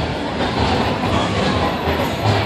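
Loud, steady street din: crowd babble mixed with a low, pulsing bass beat from club music.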